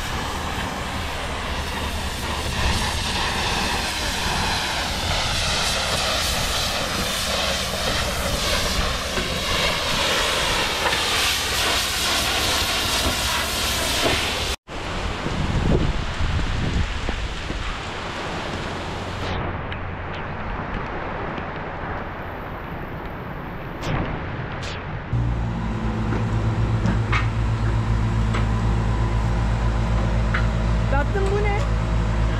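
Heavy rain and wind hiss, broken off suddenly about halfway through. Near the end a boatyard travel lift's engine starts a steady low hum.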